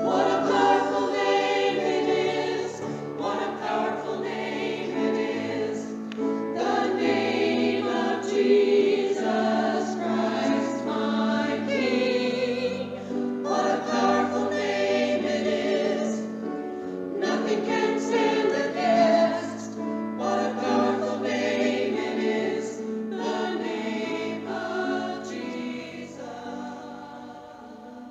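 A choir singing a hymn in sustained chords, the music dying away near the end.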